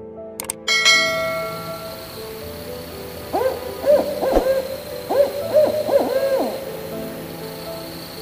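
A couple of quick clicks and a ringing chime about a second in, then an owl hooting: a run of short calls that rise and fall in pitch, in two groups over about three seconds.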